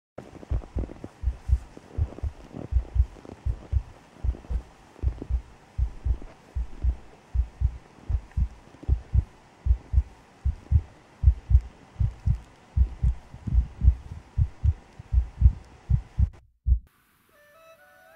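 A steady run of low, muffled thumps, about two to three a second, that stops abruptly a little over a second before the end.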